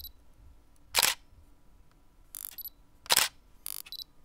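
Sound effects of an animated end card: a few brief, sharp noise bursts, the loudest about a second and three seconds in, with fainter ones between and near silence around them.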